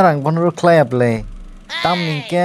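Speech only: a character's voice speaking Kokborok in quick, short phrases.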